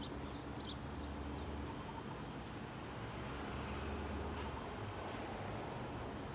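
A steady low background hum, with a few short, faint high chirps in the first second.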